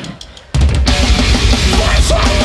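Live hardcore band kicking into a song. A few sharp clicks in a quiet moment, then about half a second in the full band comes in loud with heavy drums and guitars.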